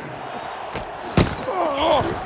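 A single hard thud of football pads colliding, picked up on a player's body mic over steady stadium crowd noise, about a second in. A short vocal grunt or shout follows near the end.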